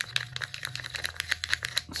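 Plastic spoon stirring and scraping paint in a plastic cup: a quick run of small clicks, several a second.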